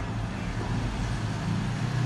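Steady low rumble with an even hiss over it: the background ambience of the room, with no distinct event.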